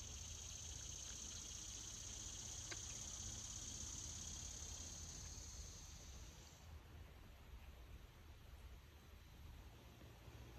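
Faint, steady high-pitched insect trill in woodland, cutting off suddenly about two-thirds of the way through, over a low rumble.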